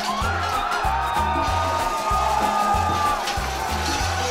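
Background music: a pulsing bass line repeating a couple of notes a second, under a long held melody line that glides slowly in pitch.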